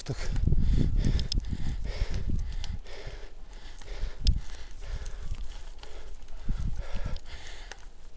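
Wind rumbling on the microphone and a road bicycle rattling over rough chip-seal asphalt, with irregular knocks. The wind rumble is heaviest in the first few seconds.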